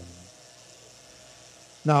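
A man's speaking voice trails off, followed by a pause of faint, even room hiss, and his voice starts again near the end.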